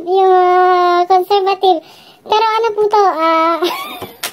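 A high-pitched voice singing in long held notes. It holds one steady note for about a second, then a few short notes, pauses around the middle, and sings another long held note.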